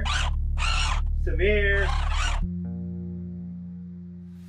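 Background film score: a steady low drone under short hissing bursts and two brief gliding pitched sounds in the first two seconds, then a held chord that fades away.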